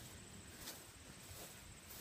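Near silence: faint outdoor background with a faint steady high whine.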